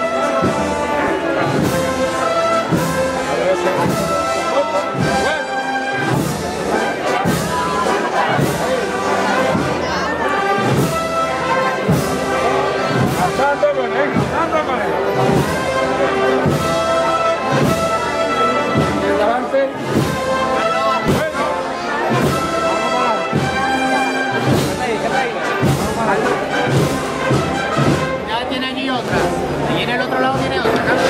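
A brass band playing a processional march, with sustained brass chords over a steady drum beat.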